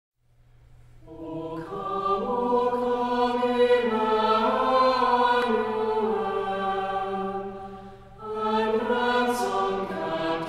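Choir singing a slow hymn in long held notes, fading in over the first two seconds, with a short break about eight seconds in before the next phrase.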